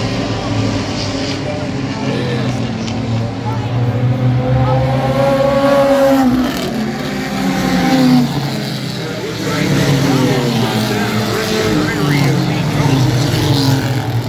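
Renegade-class race car engines running around the oval, their pitch rising and falling as the cars pass. The loudest pass comes a little past the middle.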